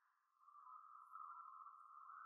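Near silence with a faint, steady high tone that swells slightly about half a second in.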